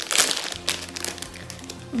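Plastic jewellery pouch crinkling as it is handled and opened to take out an earring, loudest in the first half second. Soft background music with steady held notes runs underneath.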